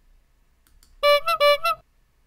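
A sound effect played back from Ecamm Live's sound-effects panel: a short electronic jingle of four notes alternating low and high, starting about a second in and lasting under a second.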